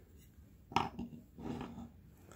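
Hard clacks of folding knives being handled and set against each other on a wooden board: a sharp clack a little before the middle, a smaller one just after, then softer handling rubs.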